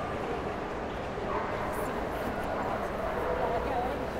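Steady hubbub of a large indoor show hall, with faint distant voices and dogs.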